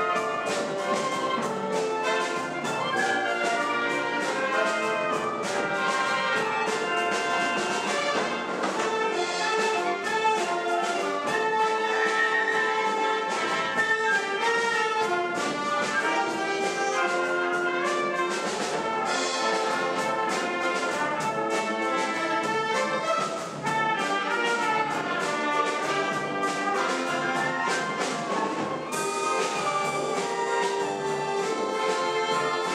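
A brass band of wind instruments, trumpets and trombones among them, playing a piece together in rehearsal, with continuous sustained notes and changing melody lines.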